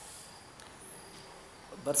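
Faint, high-pitched chirping of insects, with a few small chirps about a second in, heard during a pause in speech.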